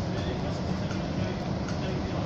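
A Czechoslovak E 499.0 'Bobina' electric locomotive rolling slowly into a station platform, a steady low rumble with the murmur of voices nearby.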